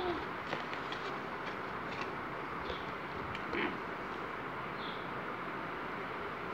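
Foil wrapper of a Kinder Ovo chocolate egg being peeled off by hand: a few faint, scattered crinkles and clicks over a steady background hiss.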